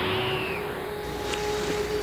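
Instrumental beat playing between vocal samples: one held tone over a low, steady rumble, with a falling whoosh in the first half-second.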